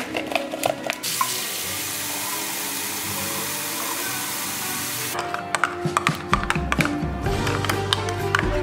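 Kitchen tap running water into a ceramic mug of hot-chocolate powder for about four seconds, then stopping; after that a metal spoon clinks and scrapes against the mug as it stirs.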